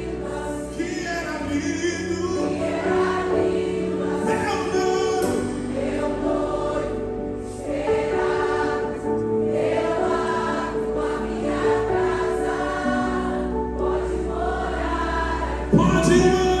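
Live worship music in a soft passage: long held keyboard chords under group singing, with little drumming. A sudden louder accent comes near the end.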